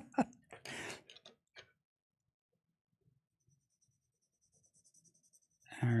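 A soft chuckle trails off into a short puff of breath. Then near silence, with faint scratching of a graphite pencil on paper from about three seconds in.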